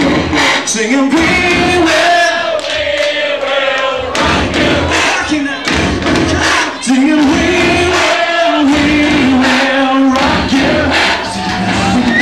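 Live piano-bar music: a male singer with piano, with many voices singing along.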